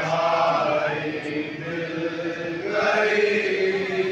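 A group of men chanting a noha, a Shia lament, in chorus with the lead reciter, in long sung phrases. A fresh phrase swells up about three seconds in.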